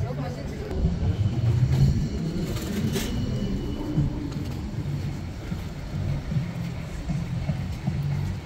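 City street ambience: traffic running and people talking, with a sharp click about three seconds in.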